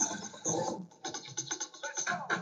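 Electronic house music from a DJ mix in a thinned-out passage, choppy rather than full. In the second half it breaks into a fast stutter of short repeated hits.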